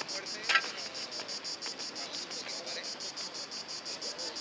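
Insects chirping in a steady, evenly pulsed high-pitched trill, about seven pulses a second. A single short sharp sound stands out about half a second in.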